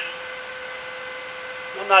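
A steady electrical hum with a few fixed tones, the strongest a mid-pitched one, running unchanged under a short pause in speech.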